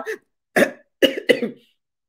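A woman coughing three short times: once about half a second in, then twice in quick succession about a second in.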